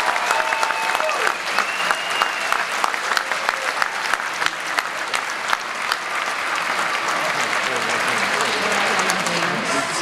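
Audience applauding, a dense steady patter of many hands clapping, with a few cheers from the crowd in the first couple of seconds.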